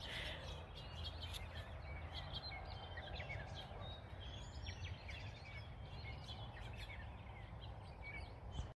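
Faint outdoor ambience: small birds chirping in short, scattered calls over a low, steady background rumble.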